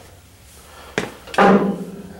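A sharp click, then a louder knock with a brief ringing tail: the truck's red painted sheet-metal panels being handled.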